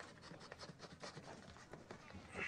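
Faint rustling of paper sheets being gathered up by hand from a carpeted floor, a run of soft, short crackles.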